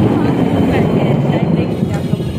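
Gusty wind buffeting the phone's microphone: a loud, fluttering low rumble that starts suddenly just before and carries on steadily.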